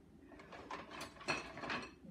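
Kitchen utensils clattering and clicking against each other and the crock as one is pulled out, with a few sharper clicks about a second in.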